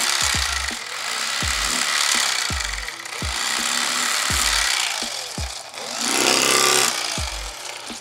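Electric fillet knife running, its reciprocating blades buzzing in surges as they cut a crappie fillet along the ribs, over background music with a regular bass beat.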